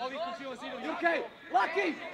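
Men's voices shouting instructions across a football pitch, with the loudest calls about a second in and near the end.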